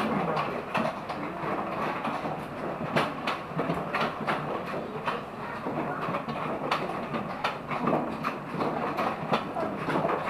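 Coaster ride cart rolling on steel rails through a tunnel: a steady rumble of wheels on track with irregular clicks and clacks.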